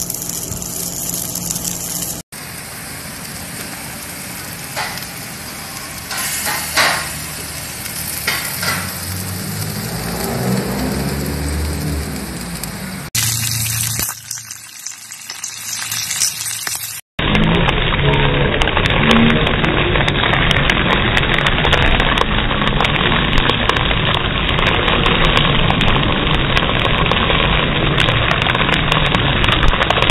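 Marrow bones sizzling and spitting as they cook over charcoal and in a cast-iron skillet, in short clips that break off abruptly. The last half is a louder, steady sizzle from bones on a large flat-top grill, with a low hum underneath.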